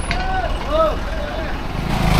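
Road traffic: a low, steady rumble of buses and other vehicles passing close by on the street.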